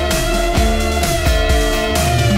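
Rock music with electric guitar and a steady drum beat, played back from a cassette on a Mayak-233 cassette deck.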